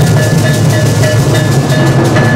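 Several snare drums played loudly and fast with sticks and hands, a dense stream of hits over a steady beat of about four strikes a second.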